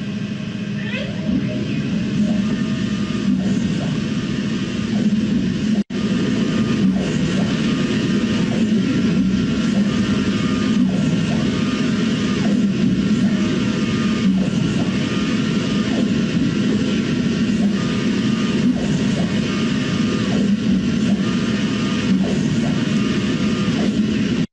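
A 3D printer running a print job: a steady, loud machine noise with a faint pattern repeating about once a second as the print head sweeps over the tray. The sound cuts out briefly about six seconds in.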